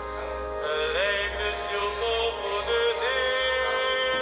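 Sung devotional hymn from a radio broadcast of the Rosary: voices glide up into long held notes over a steady accompaniment, with a thin, band-limited broadcast sound.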